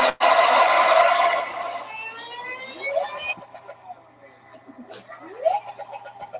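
Car engine, loud and steady for about two seconds, then fading, with several quick rising revs after that.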